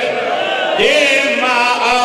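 A man chanting in a melodic, sung recitation into microphones, holding long notes with a wavering pitch.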